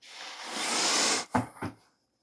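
A breathy hiss that swells over about a second and cuts off sharply, followed by two short, low sounds.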